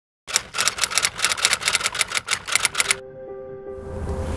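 A rapid, even run of sharp clicks, about eight a second, that stops about three seconds in. A held musical chord then begins and carries on.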